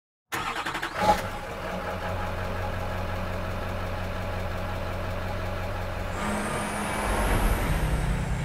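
Semi truck engine starting: a quick run of clicks, a short loud burst about a second in, then steady running. A few seconds before the end it steps up and grows louder, with a high whine climbing slowly.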